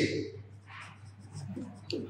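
Felt-tip marker writing on a whiteboard: a series of faint short strokes and scratches as letters are formed, with a sharper tick near the end.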